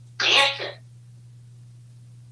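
A single short cough, about half a second long and loud, starting about a quarter second in, over a steady low hum.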